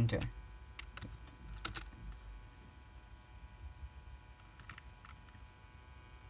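A few separate computer keyboard key presses: one sharp click about a second in, another just under a second later, and two faint ones near the end, over a faint steady hum.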